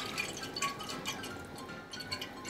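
Water running from a kitchen faucet into a metal stockpot, filling it. Background music plays under it.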